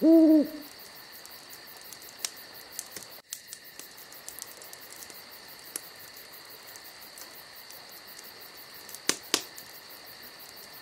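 A short, loud hooting call in the first half second, then a faint steady hiss with a thin high whine and a few scattered clicks, two of them sharper near the end.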